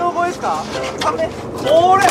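Excited voices exclaiming in short bursts, cries without clear words, from people on a fishing boat.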